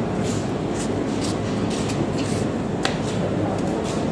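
Steady supermarket background noise: a low hum with a few faint clicks and knocks.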